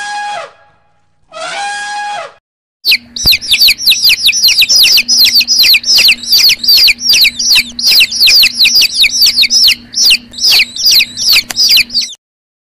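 An elephant trumpeting twice in short calls, then a crowd of baby chicks peeping loudly and without a break, many rapid high chirps falling in pitch, over a faint steady low hum.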